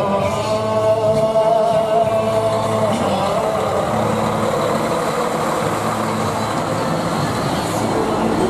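Dekotora truck's diesel engine fitted with mani-wari (a split exhaust manifold), giving a steady whistling tone for about three seconds, then a broad rushing engine noise as the truck drives past and away.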